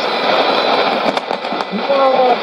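Shortwave AM broadcast received on a Sony ICF-2001D: a gap in the Tigrinya speech filled with steady static hiss, and the voice coming back faintly near the end.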